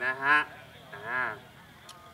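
A man's voice over a PA system: a short Thai phrase, then one drawn-out 'ah' about a second in, then low background noise.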